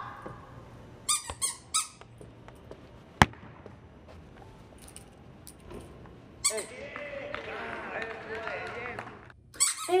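A football kick-about in a large echoing hall: a few short squeaks and knocks, then a single sharp kick of the ball about three seconds in. In the second half, men shout 'hey' in the hall.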